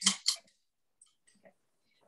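The tail of a woman's voice, then near silence with a few faint light clicks about one second in and again half a second later.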